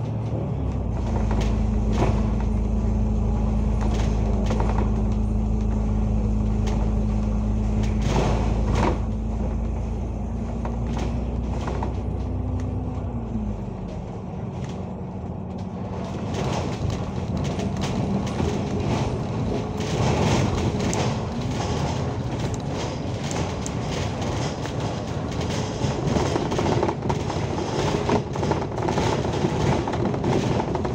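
Alexander Dennis Enviro500 MMC double-decker bus under way, heard from inside the upper deck: engine and driveline running with a steady hum, amid body rattles and knocks. About halfway through, the hum drops in pitch and the sound eases a little, then builds again with more rattling.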